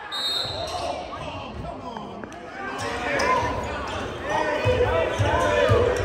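A basketball dribbled on a hardwood gym floor, a series of low thumps in the second half, under spectators' voices and chatter in the gymnasium.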